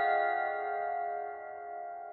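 The closing notes of outro music: a few chime-like bell tones, struck just before, ring on and slowly fade away with no new note struck.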